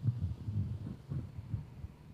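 Microphone handling noise: irregular low, dull knocks and rubbing as a hand grips a microphone and takes it from its stand, over a steady low hum from the PA.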